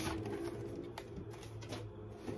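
Cardboard LP record sleeves being handled, with soft knocks and rustles near the start, about a second in and near the end, over a low cooing call in the background.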